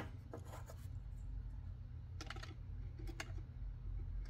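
Faint, light plastic clicks and taps of a LEGO minifigure being handled against LEGO bricks, a few scattered small knocks as the figure is fitted onto the model's back bumper.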